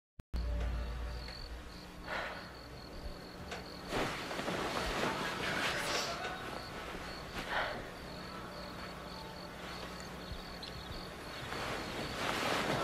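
Crickets chirping steadily, about two chirps a second, over a low hum, with a few short swells of noise.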